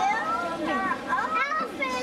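Crowd babble of many overlapping voices, mostly children's high-pitched voices talking and calling out, with no single clear speaker.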